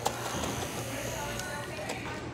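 Small handheld battery-powered fan running close to the microphone: a steady buzzing whir of its little motor and spinning blades, with a single click right at the start.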